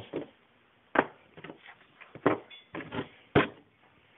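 Knocks and taps of objects being handled and set down on a hard surface: three sharp knocks about a second apart, with lighter taps between.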